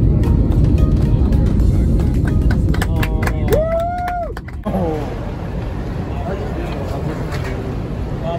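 Loud steady roar inside an airliner cabin as the jet rolls out on the runway just after touchdown, spoilers raised. A brief tone that rises, holds and falls sounds a little past the middle. About halfway through, the roar cuts off abruptly to people talking over vehicle noise.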